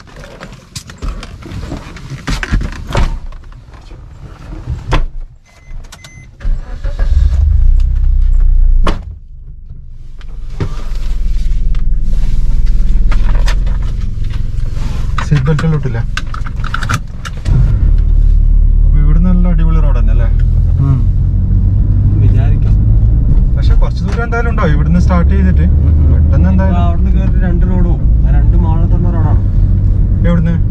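Car door handle clicks and door knocks as someone gets into a Maruti Suzuki car. Then the engine runs with a steady low rumble, heard from inside the cabin as the car drives off.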